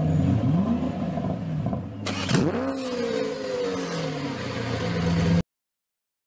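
Car engine revving: the revs climb sharply at the start and again about two seconds in, then settle to a steadier run before the sound cuts off suddenly near the end.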